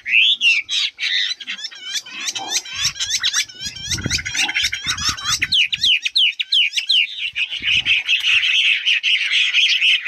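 Caged Chinese hwamei singing: a fast run of loud whistled notes sweeping up and down, turning into a dense, harsh chatter from about seven seconds in. A few low knocks sound in the middle.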